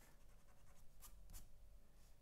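Faint pencil strokes on drawing paper, two short scratches about a second in, over a low room hum.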